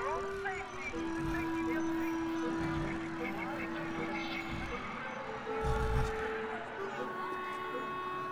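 Film score of long held notes that shift pitch every second or two, over a murmur of background voices, with a low thud about six seconds in.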